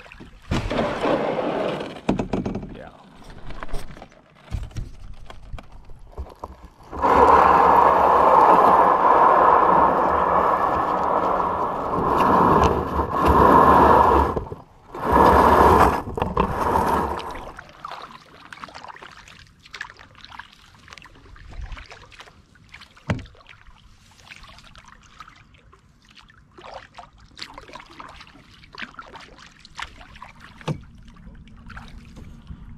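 Canoe hull being dragged over gravel: a loud, continuous scrape lasting about ten seconds, broken by two short pauses near its end, with quieter scattered knocks and clatter before and after.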